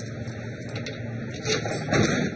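A key being worked in a steel locker's lock: a few faint metallic clicks and rattles, a little louder near the end, over a steady low hum.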